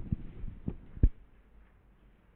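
Dull, low footstep thuds, about four of them within the first second or so, the last the loudest.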